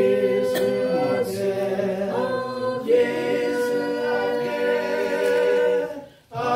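Three voices, two men and a woman, singing a praise hymn together without accompaniment, moving through held notes to one long sustained note from about three seconds in; the phrase breaks off at the very end for a breath.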